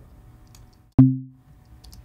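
A single synthesized 808-style kick drum from Ableton Live's Operator, played once about a second in. It starts with a hard click from the transient oscillator, then a short low boom that dies away within about half a second.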